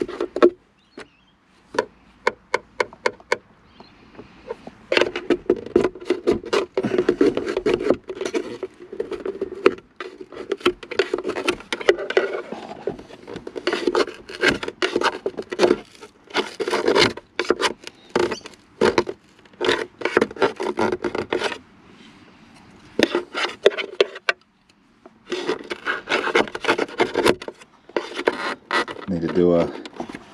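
Plastic dashboard trim of a Holden VS Commodore being worked loose by hand: rubbing and scraping with many sharp clicks, coming in bursts with short pauses.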